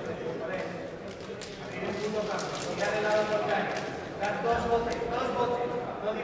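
Several voices talking and calling out in a reverberant sports hall, louder in two stretches in the middle and latter part, with scattered sharp taps and clicks.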